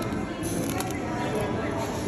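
Background hubbub of people talking in a busy indoor eating place, with a few light clicks about half a second to a second in.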